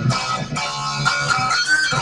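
Solid-body electric guitar being strummed at an even level between sung lines.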